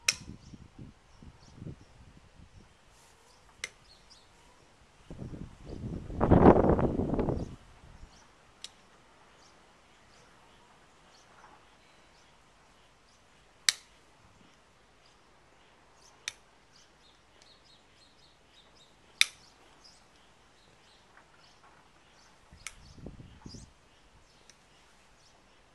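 Hoof nippers cutting through a Texas Longhorn cow's overgrown hoof horn: single sharp snaps every few seconds, about seven in all. About five seconds in, a louder rushing noise lasts a couple of seconds, with a fainter one near the end.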